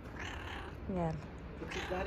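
Black-and-white domestic cat meowing as it is stroked: a short call falling in pitch about a second in, with another brief sound near the end.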